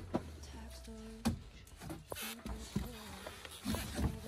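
A few sharp clicks and knocks of riding gear and bags being handled in a van's metal-walled cargo area, the loudest about a second in, with a faint voice under them.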